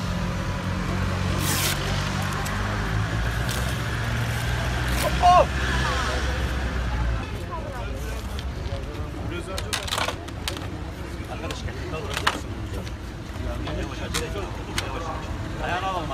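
A vehicle engine idling close by, a steady low hum that fades out about seven seconds in. About five seconds in comes a short wavering cry of pain, the loudest sound, and a few sharp clicks follow later.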